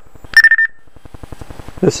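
Motorola i355 iDEN push-to-talk handset giving its short, high Direct Talk chirp about a third of a second in as an incoming call begins. A fast, even clicking buzz follows from the handset's speaker, and the incoming voice starts near the end.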